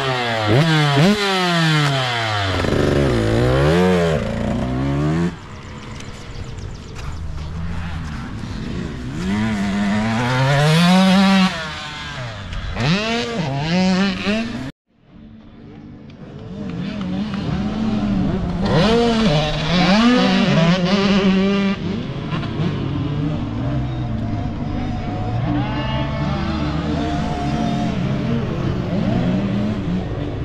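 Two-stroke Husqvarna TC youth motocross bike engine revved hard several times in quick succession, then dirt bike engines riding the track, pitch climbing and falling as they accelerate and shift. The sound cuts out abruptly about halfway through, then the engines return.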